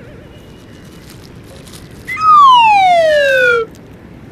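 Cartoon-style descending whistle sound effect: one loud whistle tone sliding steadily down in pitch for about a second and a half, starting about two seconds in and cutting off sharply.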